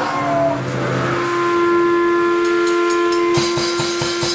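Electric guitar amp feedback: a loud, steady whistling tone held for a couple of seconds after a short falling pitch bend. Near the end the drum kit comes in with fast, even hits.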